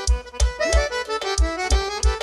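Forró pisadinha band playing: an accordion holds and moves between notes over a heavy kick drum beating about three times a second.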